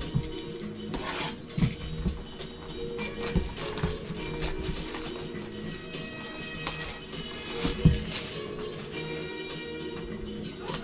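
Background music, with the plastic shrink wrap of a sealed trading-card box crinkling and tearing as it is peeled off by gloved hands; a few sharp crackles stand out, the loudest near the end.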